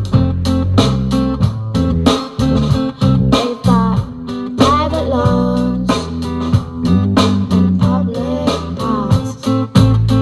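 Guitar-led song with bass and a steady drum beat, played loud through a car's aftermarket hi-fi system (Audison amplifiers and processor, Hertz speakers) inside the cabin.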